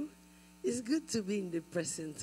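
A steady electrical mains hum from the microphone sound system, with a woman's amplified voice speaking over it from a little over half a second in.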